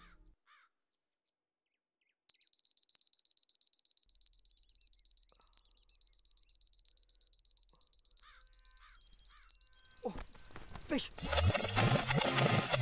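Electronic alarm clock beeping: a high-pitched tone pulsing rapidly, several beeps a second, starting about two seconds in after near silence. Music with a beat comes in near the end.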